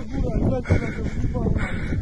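A man's voice, brief and indistinct, over a steady low rumble of wind and handling noise on a phone microphone.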